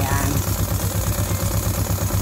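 Tractor engine idling steadily, a low, even beat under the scene.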